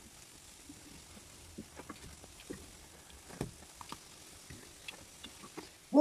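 Kefir pancakes frying in shallow oil in a frying pan: a faint steady sizzle with scattered crackles. A few light clicks of a metal fork and wooden spatula against the pan as the pancakes are turned, the sharpest about halfway through.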